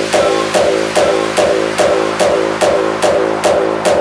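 Hardbass dance track in a section without vocals: a steady kick drum on every beat, a little over two a second, with a pitched synth bass line filling between the kicks.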